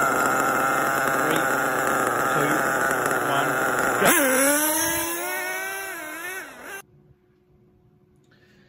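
Nitro RC monster trucks' small two-stroke glow engines running at a high, steady buzz, then about four seconds in they launch and rev hard, the pitch dipping and then climbing and wavering as they accelerate away. The sound cuts off suddenly about a second before the end, leaving near silence.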